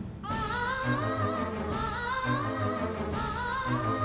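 Background score: a sung melody with vibrato over a steady bass line, starting just after a brief break.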